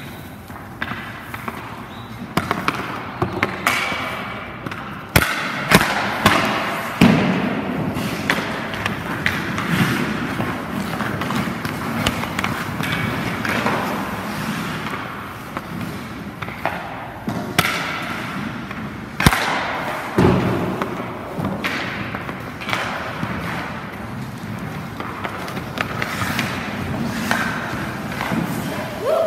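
Ice-rink practice sounds: hockey skate blades scraping and carving on the ice, with sharp knocks and thuds of pucks, sticks and goalie gear every few seconds, several close together about five to seven seconds in and again around twenty seconds.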